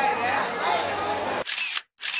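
Background chatter, then two camera shutter clicks about half a second apart near the end, each cut off by a sudden silence.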